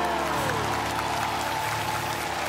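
A band of bayan button accordions and acoustic guitar ends a song, its last chord ringing out with one note sliding down in pitch about half a second in, while applause from the audience starts to swell.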